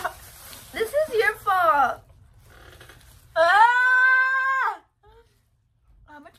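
A young woman's gagging, wordless vocal noises with a falling pitch as she spits a mouthful of chewed marshmallows into a plastic bag, then one long, high held cry about three seconds in.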